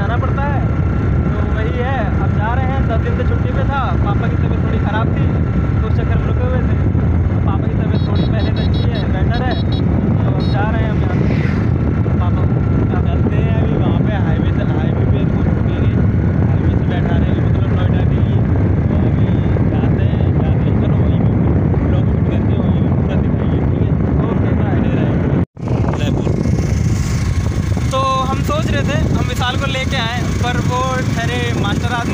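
Steady, loud wind buffeting the phone's microphone while riding a motorcycle at speed, with the bike's running and road noise underneath. The sound drops out for an instant a few seconds before the end.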